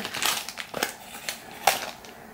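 Sheets of paper stickers being handled and shuffled together, giving a few short, irregular rustles and crinkles.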